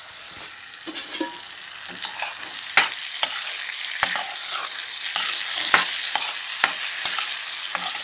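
Ripe bitter gourd pickle mixture sizzling in oil in a pan as a spoon stirs it: a steady hiss with sharp clicks of the spoon against the pan every so often.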